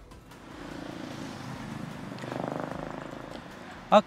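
A motor vehicle's engine running with a fast, even pulse, growing louder to a peak a little past the middle and then fading, as a vehicle passes in street traffic.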